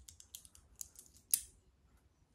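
Small metal coins clicking and clinking together in the hand as they are picked off one by one and counted. There is a string of light clicks, with one sharper click a little past halfway.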